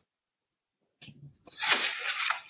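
A person sneezing: a faint short intake about a second in, then a loud, sharp, hissy burst half a second later.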